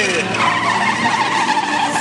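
Drift cars running on the circuit: engines and tyre squeal heard steadily, with voices nearby.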